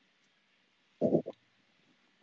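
A man's short hummed vocal note about a second in, followed by a briefer second one: the start of singing, broken off.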